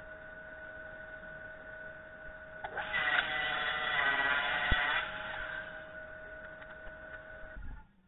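Table saw cutting through an oak and resin panel pushed on a sled: a loud run of blade and motor noise for about two seconds, starting near three seconds in, with a sharp click in the middle of the cut, then the blade winding down. A steady faint hum underlies it.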